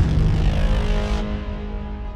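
A rifle shot from a scoped AR-style rifle: one sudden loud report right at the start, followed by a long rumbling echo that slowly dies away, over background music.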